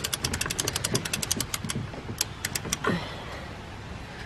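Patio umbrella's crank ratchet clicking rapidly as it is wound, about fifteen clicks a second for nearly two seconds, then a few slower clicks before it stops.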